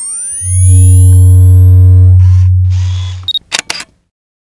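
Production logo sound effect: sweeping rising glides lead into a loud, deep steady hum that fades out a little after three seconds in. It ends with a quick run of sharp camera-shutter clicks.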